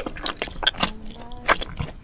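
Close-miked mouth sounds of eating: a run of sharp bites and wet chewing clicks. A faint steady low hum joins about a second in.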